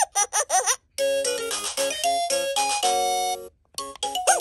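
VTech Rattle and Sing Puppy baby toy playing through its small speaker: a few short chirpy voice sounds, then a jingle of bright electronic notes lasting about two and a half seconds, which stops shortly before the end.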